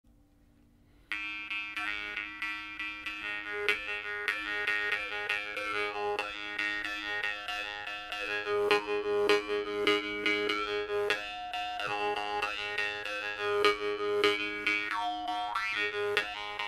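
Sicilian maranzano jaw harp made by Turi Petralia, plucked in a steady rhythm over one unchanging drone, its overtones shifting to carry a melody. It starts about a second in.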